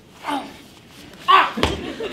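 An actor's wordless vocal sounds: a short one near the start, then a loud cry about a second and a quarter in, followed at once by a single sharp thump on the stage floor as he springs up from kneeling.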